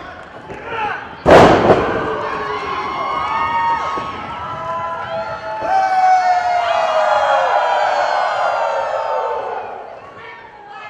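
A wrestler's body slammed onto the wrestling ring mat: one loud thud about a second in, followed by the crowd cheering and shouting in reaction.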